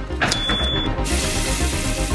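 Trailer music with a steady beat runs throughout. Shortly after the start, a badge reader gives one short electronic beep as a badge is pressed to it. From about a second in, a running tap hisses.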